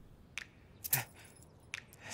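A few short, sharp clicks or taps, about three in two seconds, over faint room tone.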